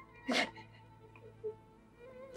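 A crying woman gives one short sob about a third of a second in, over faint soft background music.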